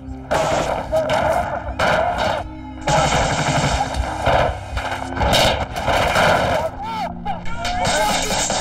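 Bursts of automatic gunfire in a firefight, broken by a few short pauses.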